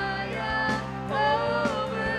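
Live worship band: several voices singing together in harmony, holding long notes, over guitars and bass.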